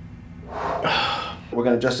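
A man's breathy 'whoo' exclamation, blown out through pursed lips for about a second, followed near the end by a man starting to speak.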